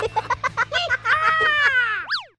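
A high-pitched, cartoon-like voice giggling in quick short bursts, about six a second. From about a second in it holds one long note that falls slightly in pitch.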